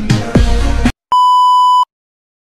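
Electronic music with a beat stops abruptly just under a second in. After a brief gap, a single steady, high electronic beep sounds for about three-quarters of a second and cuts off sharply.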